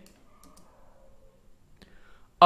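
Near silence with three faint computer mouse clicks: two close together about half a second in and one near the end.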